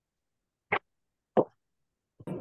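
Two short pops about two-thirds of a second apart, the second slightly longer with a quick fade, heard over a video-call link that is otherwise completely silent.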